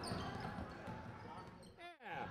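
Basketball game sounds in a large gym: players' voices and a ball bouncing on the hardwood. The sound fades near the end and breaks into a brief falling warble as it cuts off.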